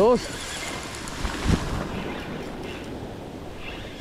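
Ocean surf washing up the beach, a steady rushing wash, with wind on the microphone that gives a brief low rumble about one and a half seconds in.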